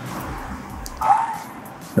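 A stock 'Cheering and applause' sound effect playing back: crowd applause with a short cheer about a second in. It fades out over the last second, following the fade-out just set on the layer.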